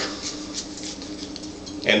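A natural cork being twisted off the worm of a two-step waiter's corkscrew, giving a few faint scratchy sounds in the first second.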